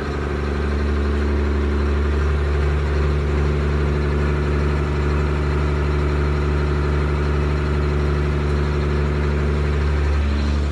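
Ford 9600 pulling tractor's diesel engine idling steadily as it creeps past at low speed, an even low-pitched hum that neither revs up nor drops.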